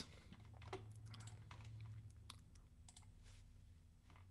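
Near silence with faint, scattered clicks of a computer mouse and keyboard over a low, steady hum.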